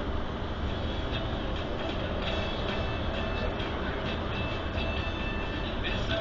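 Steady engine and tyre rumble heard from inside a tour coach cruising along a motorway.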